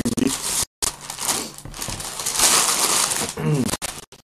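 Crinkling, rustling noise close to the microphone, loudest about two and a half to three seconds in. The sound cuts out completely for a moment a little under a second in, a glitch in the stream's audio.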